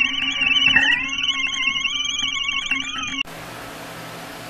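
Several warbling high-pitched tones like an electronic instrument, sliding down briefly about a second in. They cut off abruptly about three seconds in and give way to a quieter steady hiss.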